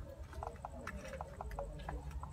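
Light, quick clicks of fingers tapping on a smartphone touchscreen, about four a second and a little uneven, over a faint low hum.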